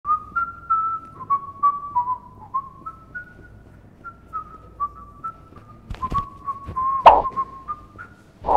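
A person whistling a tune of short stepping notes, with a few sharp knocks near the end, the loudest about seven seconds in.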